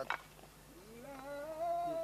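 A person's voice holding one drawn-out hum or vowel, rising in pitch and then steady, a hesitation sound in the middle of speech.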